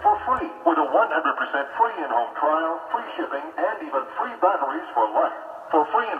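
Broadcast speech from an AM station, played through the loudspeaker of an Atwater Kent Model 9 breadboard TRF receiver. The voice sounds thin and narrow, with no bass, and talks continuously.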